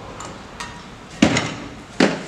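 A 12-inch trailer hub-and-drum set down on a table: one solid knock about a second in, with a short ring after it, preceded by a few light handling clicks.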